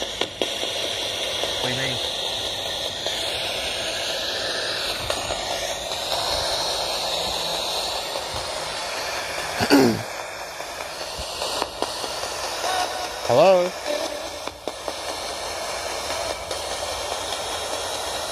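ITC spirit-box device (IDC Direct Linc FX) sweeping radio stations through its small speaker: a steady hiss of static broken by brief voice-like snatches, the loudest about ten seconds in and again a few seconds later.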